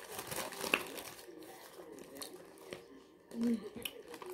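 A Taco Bell paper taco wrapper rustling and crinkling in short, scattered crackles as it is unwrapped.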